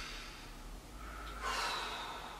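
A person taking a slow, deep breath: a rush of air that swells to its loudest about a second and a half in.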